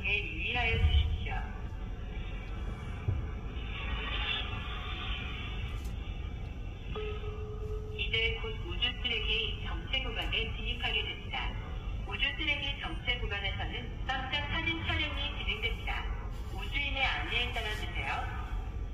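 A voice talking over music, sounding thin and muffled as if played through a small speaker, over a steady low rumble inside the car.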